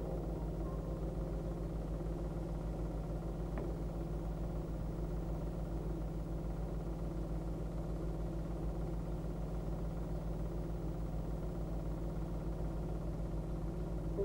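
A steady, low mechanical drone with a fast, even pulse, like a small engine or motor running, unchanging throughout.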